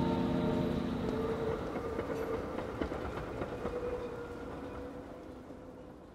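The last held notes of a song die away in the first second, leaving a low rumbling noise with scattered irregular clicks and a faint steady hum, which fades out gradually.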